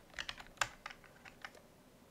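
Computer keyboard typing: a few scattered key clicks, bunched near the start, with one more after a short gap.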